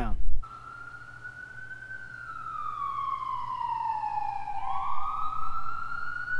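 A siren wailing: one long tone that slowly slides down in pitch and then climbs back up again about two thirds of the way through.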